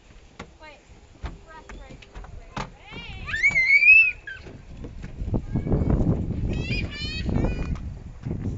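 A young child's high-pitched squeal, wavering up and down for about a second, comes about three seconds in and is the loudest sound. From about five seconds in there is a low rumbling, scuffing noise, with more short high cries over it near the end.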